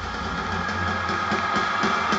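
Live band music heard from the audience in a large hall: a steady low bass drone and held tones, with drum hits coming in about a third of the way through and settling into a steady beat.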